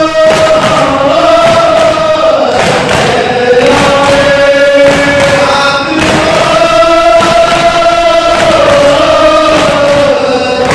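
A crowd of men chanting a noha (Shia mourning lament) together in long drawn-out notes. Under the chant come repeated slaps of hands beating on chests in matam.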